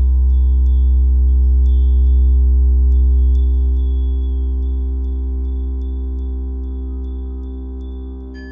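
Background music: a loud, steady low drone with held tones, under short high chime-like tinkling notes. It fades slowly from about halfway through.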